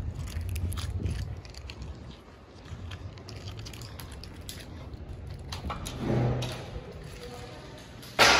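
Walking with a handheld phone: a low rumble of wind and handling on the microphone, strongest in the first second or so, with scattered light clicks of footsteps and handling throughout.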